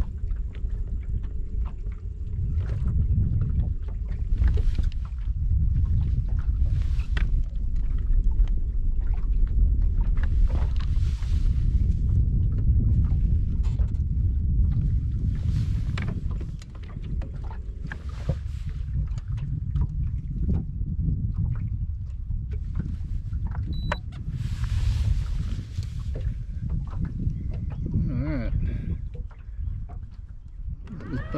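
Wind rumbling on the microphone aboard a small boat on rippled water, with scattered light knocks and water slaps against the hull. Brief hissing rushes come about ten and twenty-five seconds in.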